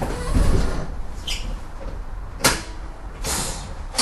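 Vintage streetcar heard from inside: a low rumble, with sharp metallic knocks about two and a half seconds in and again at the end, and a short hiss between them.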